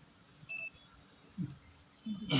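A single short, faint electronic beep about half a second in, followed a second later by a brief low sound like a voice murmur.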